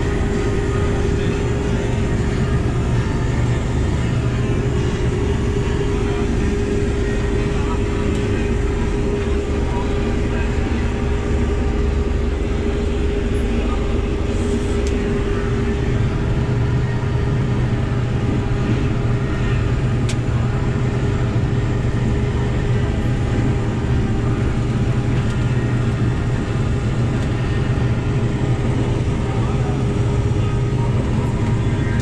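Case IH 5088 combine heard from inside its cab while harvesting soybeans: the engine and threshing machinery running in a steady, loud drone with a steady hum over it.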